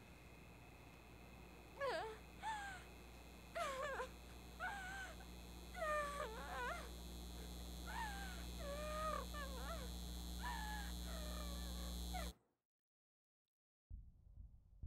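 A series of short, high animal cries, about a dozen over ten seconds, each gliding in pitch, over a steady low hum. Everything cuts off abruptly to silence near the end.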